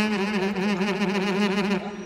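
A single held, pitched tone with a fast, even wobble in pitch, a comic sound effect from the film's soundtrack. It cuts off shortly before the end.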